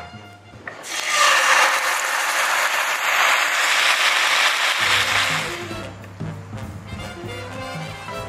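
Tomato sauce sizzling as it hits hot olive oil in a frying pan. A loud hiss starts about a second in and fades away after about four seconds.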